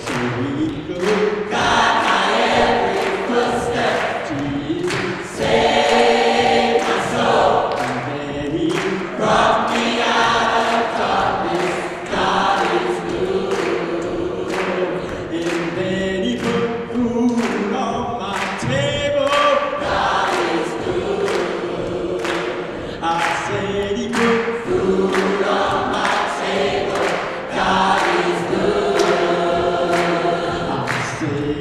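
Gospel choir singing, with a steady beat running underneath.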